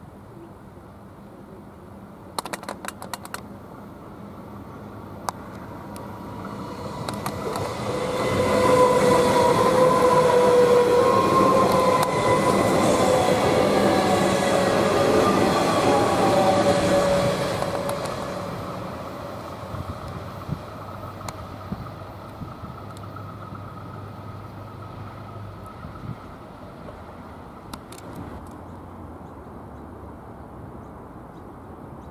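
A suburban electric train passing close by: it grows louder, runs past with a steady electric whine over wheel and rail rumble, then fades away. A quick run of sharp clicks comes about three seconds in.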